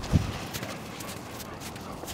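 Central Asian shepherd dog's paws crunching through packed snow: several short, scattered steps.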